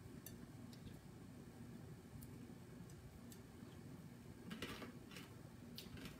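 Very faint, with scattered soft clicks and a few slightly louder crunches near the end: whole roasted coffee beans being chewed.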